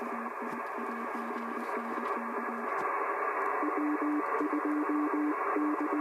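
Shortwave transceiver speaker audio on the 15-metre band: a hiss of band noise, cut off above the receiver's passband, with Morse code (CW) signals keyed as low tones. One station sends in the first half and a slightly higher-pitched one after, while the hiss grows slowly louder.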